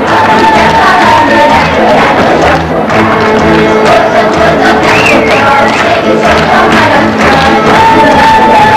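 A live folk string band plays lively dance music, a fiddle carrying the melody over the steady pulsing beat of a double bass.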